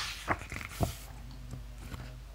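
A photobook page turned by hand: a brief paper swish, then two short sharp slaps about half a second apart as the page flips over and lands.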